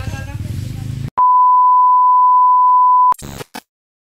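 A loud, steady electronic beep at one pitch, lasting about two seconds: it starts about a second in and cuts off abruptly. Before it there is a low rumble with faint voices.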